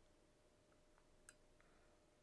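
Near silence: room tone with a faint steady hum and a single faint click a little over a second in.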